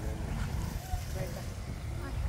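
Wind buffeting the microphone in a steady, uneven low rumble, with soft, faint voices beneath it.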